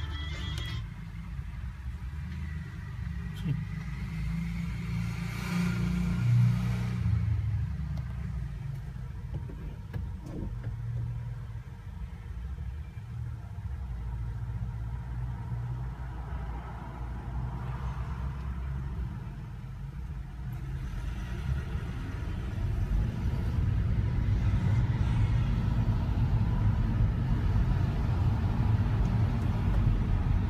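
Low rumble of a car's engine and road noise heard from inside the cabin, creeping in city traffic and growing louder in the last third as the car gets moving.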